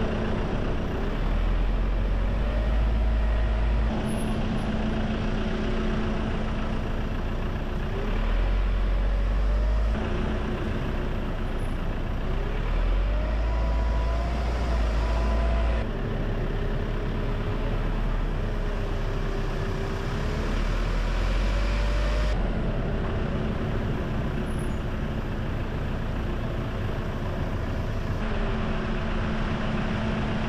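A car's engine and road noise as it drives slowly, the engine note rising and falling with speed and gear changes over a steady rumble. The sound jumps abruptly every few seconds where the footage is cut.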